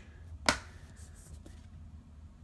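A single sharp click about half a second in, from thick cardboard game boards being handled and knocked together.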